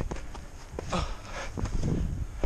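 A person scrambling up a steep grassy bank on foot and by hand: irregular footfalls and thumps with grass rustling, over a low rumble of movement against the body-worn camera's microphone.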